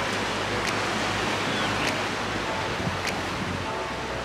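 Steady wash of sea waves breaking on rocks, mixed with wind. A faint tick repeats about every 1.2 seconds.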